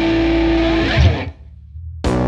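Background rock music with electric guitar holding sustained notes. It fades out about a second in and leaves a short quiet gap.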